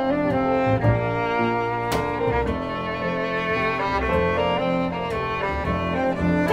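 Acoustic trio of violin, grand piano and upright double bass playing together, the violin bowing held melody notes over the bass and piano.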